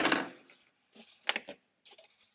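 Paper plate and card being handled at a craft table: a short rustle at the start, then a few light scrapes and taps as the punched holes in the paper hat are poked out.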